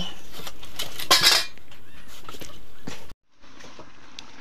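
Steel cookware clinking and clattering: a few light metal clicks and one louder clatter about a second in. The sound drops out for a moment about three seconds in, then a quieter background follows.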